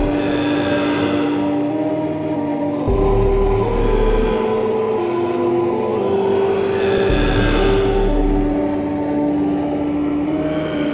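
Dark ambient / dungeon synth music: slow, sustained synthesizer notes that shift pitch every second or two over a hiss-like pad, with a deep bass note swelling in about every four seconds, about three seconds in and again about seven seconds in.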